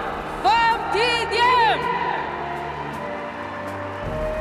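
An announcer's voice over a stadium public-address system for the first half, over ceremonial background music that plays on alone afterwards.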